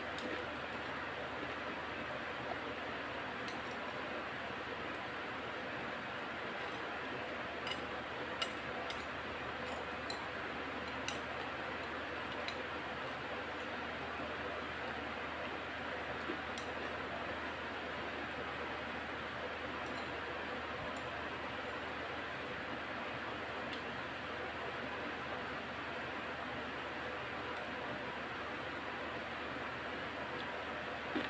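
A metal spoon clicks and scrapes against a glass bowl now and then, more often in the first half, with the crunch of tortilla chips being chewed, over a steady background hiss.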